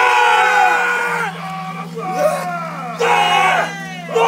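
Māori haka: a group of men shouting a chant in unison in loud bursts. The first burst lasts about a second, with shorter calls after it and another strong shout about three seconds in.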